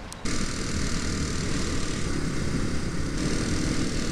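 A Kawasaki 250cc single-cylinder trail bike running at road speed, with heavy wind noise on the helmet-side microphone. The sound cuts in abruptly about a quarter second in and then holds steady.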